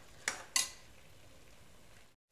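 Steel ladle knocking and scraping twice against the side of an aluminium pressure cooker while chicken is stirred, about half a second in, followed by a faint steady frying hiss.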